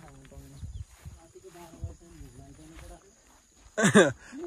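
People talking indistinctly while walking. Just before the end, a sudden loud burst with a steeply falling pitch cuts in, the loudest sound here.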